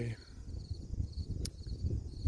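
Crickets chirping in a steady, high, evenly pulsing trill over a low rumble of wind on the microphone, with one sharp click about one and a half seconds in.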